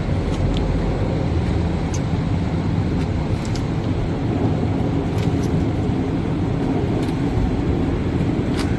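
Long-handled glass scraper blade pushed in strokes across soapy plate glass, with a few sharp ticks (따닥따닥) where the blade catches contaminants stuck to the glass surface, the kind that a pad won't wipe off. A steady low rumble runs underneath.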